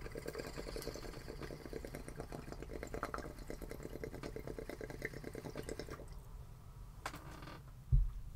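Rapid, even ticking, about seven ticks a second, over a low hum; the ticking stops about six seconds in.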